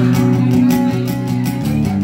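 Live band instrumental passage: an amplified acoustic guitar strumming chords over a drum kit with steady, evenly repeating cymbal hits. The chord changes near the end.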